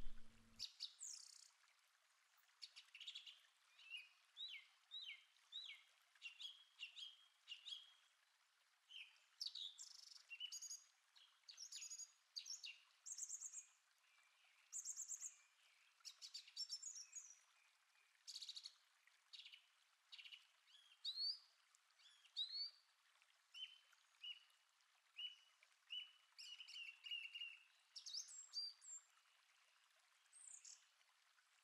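Faint birdsong: several small birds chirping and singing in short whistled phrases a second or two apart, with a brief trill in the second half.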